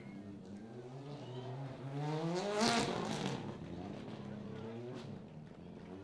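Ford Fiesta rally car engine revving hard on a sand arena: its note climbs over the first few seconds and peaks about two and a half seconds in with a rush of noise from the wheels throwing sand, then eases off.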